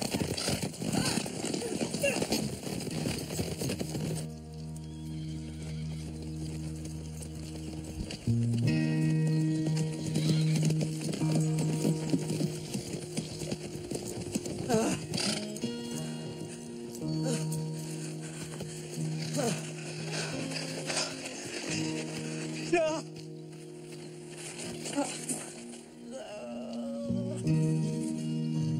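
Horses galloping for the first few seconds, then a slow film score of long held low notes, with a few brief cries rising over the music.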